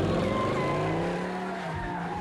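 V8 muscle car engine revving hard as the car accelerates away, tyres squealing; the sound eases off slightly in the second half.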